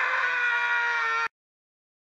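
A person's long, held shout, a voiced battle cry, cut off abruptly just over a second in.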